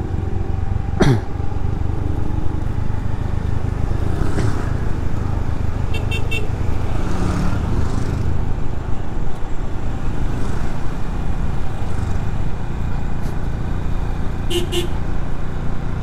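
Motor scooter riding along, its engine running under a steady low rumble of road and wind noise. Short horn toots sound about six seconds in and again near the end.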